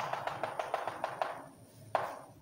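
Chalk working on a chalkboard: a rapid run of light ticks, about ten a second, that fades out after a second or so, then one sharp tap of chalk on the board near the end.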